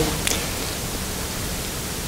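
Steady, even hiss of background noise with no distinct events: room tone and recording noise in a pause between speech.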